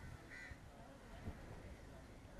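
A bird calling once, briefly, about half a second in, over faint background noise.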